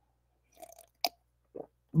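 A man drinking from a glass of water: a few faint gulping sounds and one short, sharp click about a second in.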